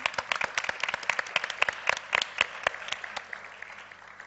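Audience applause, many hands clapping at once, thinning out and fading near the end.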